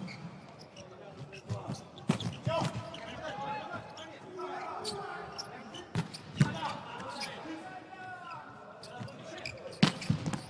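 A volleyball rally in an indoor hall: the ball is struck about six times in sharp hits, some in quick pairs, as it is passed, set and attacked. Between the hits come shoes squeaking on the court floor and players' voices echoing in the hall.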